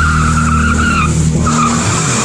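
Car tyres squealing in a burnout over the engine held at high revs. The squeal wavers, breaks off about a second in, and comes back briefly.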